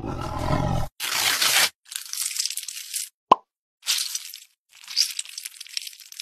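Close-miked ASMR handling noises: a string of short crinkling, scraping bursts with brief gaps between them, and one sharp pop about three seconds in.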